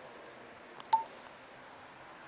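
A single short electronic beep about a second in, just after a faint click, over a quiet hall murmur.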